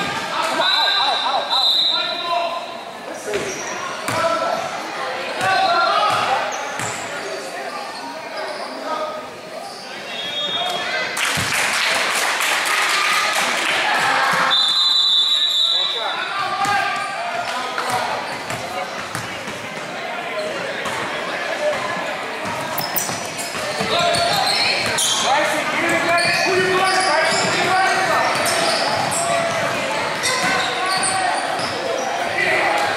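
A basketball bouncing on a hardwood gym floor amid indistinct crowd and player voices, all echoing in a large hall, with a swell of crowd noise about a third of the way through.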